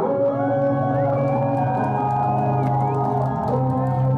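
Live band music: sustained chords over a steady low note, with high tones gliding up and down above them.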